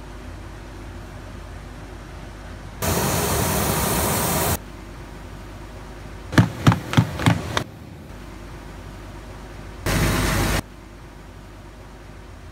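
Shoemaking workshop noise: a loud steady hiss for about two seconds that cuts in and out abruptly, a quick run of about six sharp knocks, then a shorter burst of the same hiss, over a low steady hum.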